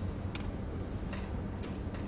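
Three light clicks as a portable boombox is handled, over a steady low hum.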